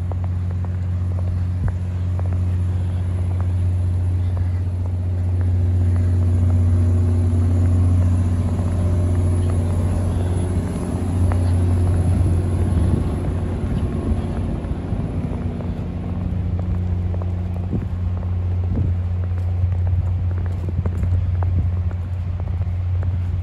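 A large engine running steadily, a deep unchanging hum with overtones, with scattered soft footsteps in snow.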